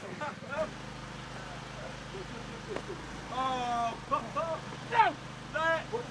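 Rugby players shouting calls during play, one long drawn-out call near the middle and short shouts after it, over a steady low mechanical hum that starts abruptly just after the first second.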